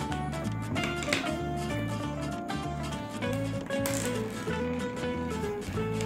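Background music: a melody of held notes over a bass line that changes about every half second.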